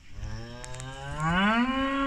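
A Holstein-Friesian cow mooing: one long moo that starts low, then rises in pitch and grows louder as it goes on.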